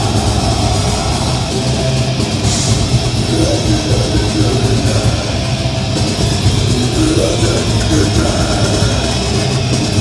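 A metal band playing live, loud and unbroken: heavily distorted electric guitars over a drum kit.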